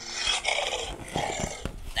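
Recorded dinosaur roar sound effect played from a Saypen talking pen's small speaker: a rough growling roar that lasts about two seconds.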